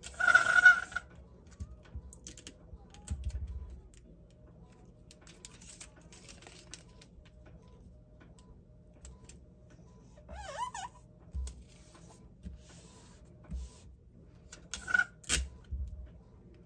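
Sheets of sublimation paper being handled, turned over and taped on a cutting mat: rustles and light scattered clicks, with a louder rustle at the start and again near the end, and a brief squeak about ten seconds in.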